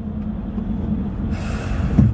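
Steady low rumble of a car's engine and road noise inside the cabin. Near the end comes a loud breathy exhale, a sigh into the microphone, lasting about half a second.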